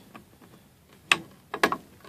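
Sharp clicks of hard 3D-printed PLA plastic against plastic: one about a second in, then a quick double click half a second later, as the upright piece is seated into the pocket of its base.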